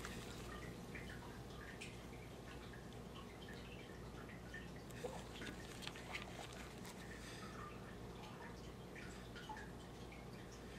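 Faint, steady room hum with a few small, soft clicks, clustered about five to six seconds in, from a scalpel and probe making a shallow incision in a preserved earthworm in a dissection pan.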